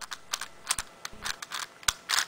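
Plastic clicking of a Rubik's Professor 5x5 cube as its layers are twisted by hand: an irregular run of short clicks, with a sharper click near the end.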